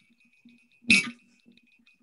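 One short, sharp sound about a second in, over a faint steady hum, from a film soundtrack heard through a video call's screen share.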